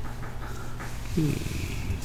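A short, low voice murmur about a second in, falling in pitch, over a steady low electrical hum.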